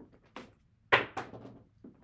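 A pair of dice thrown down a craps table: a light click, then a sharp knock about a second in as they strike the far end, a second knock and a short rattle as they tumble and settle, and one last small tap near the end.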